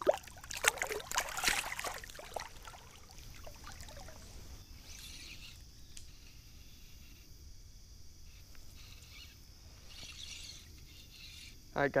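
Water splashing as a carp is let go from the hands in shallow water and kicks away, busiest over the first two seconds, then settling to a quiet river background.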